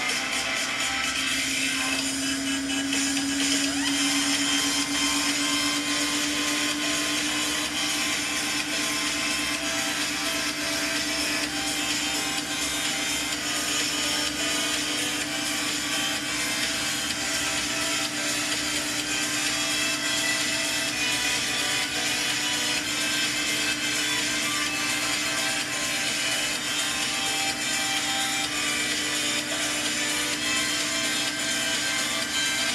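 Samsung front-loading washing machine running its permanent press cycle. A steady motor hum rises slightly in pitch over the first several seconds and then holds, over a constant rushing noise from the drum and water.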